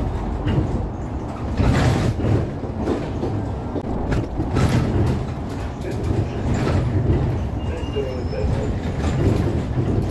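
Inside a moving city bus: a steady low engine and road rumble, with frequent rattles and knocks from the bodywork and fittings.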